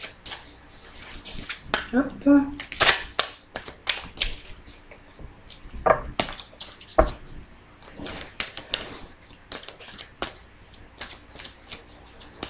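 A deck of oracle cards being shuffled and handled by hand: a quick, irregular run of sharp snaps and flicks of card edges, with short pauses.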